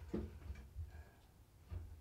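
Quiet room tone with a low steady hum and a few faint small ticks.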